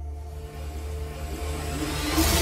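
Rising sound-design swell at the start of an animated outro: a low rumble with a few faint held tones, growing steadily louder as it builds toward the music.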